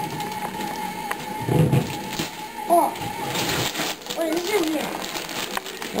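Gift wrapping paper rustling and tearing as a large present is unwrapped by hand, over background voices and a steady background tone.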